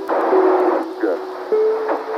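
Sampled Apollo 11 lunar-landing radio transmission: a burst of radio hiss, then a narrow, radio-filtered voice saying "Good," over the song's sustained intro notes.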